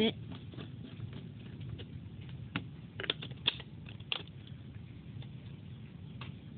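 Handling noise from a fountain pen and its cap: a few small sharp clicks and taps, clustered around the middle, over a low steady background hum.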